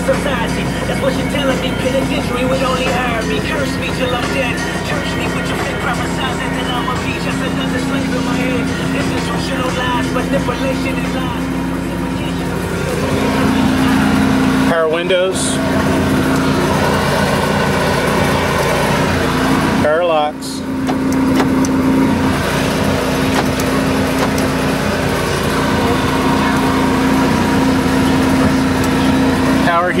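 FM radio broadcast playing through the dash stereo: a talk programme with a voice speaking, over a steady low hum.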